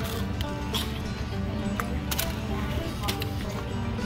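Steady background music, with a few sharp, irregular clicks from biting and chewing a crisp french fry.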